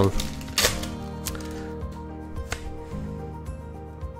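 Background music with steady held tones, under a few short sharp crinkles of a foil Pokémon booster-pack wrapper being pulled open. The loudest crinkle comes about half a second in.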